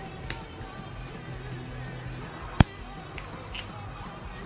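Metal nail clippers snipping plastic false nail tips into shape: a sharp clip near the start and a louder one about halfway through, then a couple of fainter clicks near the end, over quiet background music.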